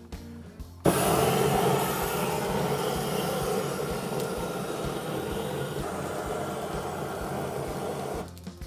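A GrillBlazer Grill Gun propane torch blasting flame into a tray of lump charcoal to light it. It is a steady rushing noise that starts suddenly about a second in, loudest at first, then holds even.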